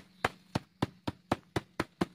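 A hand knocking repeatedly on the side of a plastic bucket laid on its side, a quick run of sharp knocks about four a second, to loosen hard, long-compacted potting soil and the root ball inside.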